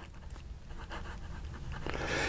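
Faint scratching of a Tramol fountain pen's nib on paper as a word is handwritten, with breathing close to the microphone and a breath drawn in near the end.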